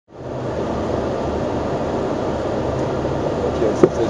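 Steady drone of a rally car's engine and drivetrain heard from inside the cockpit, with a low hum under an even noise. A single sharp click comes just before the end.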